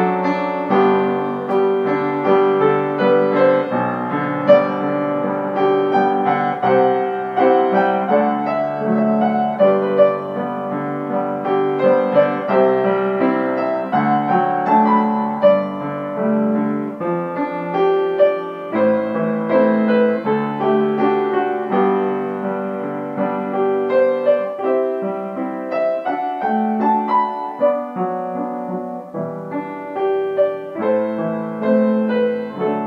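Solo piano playing a melody over sustained chords, notes struck one after another.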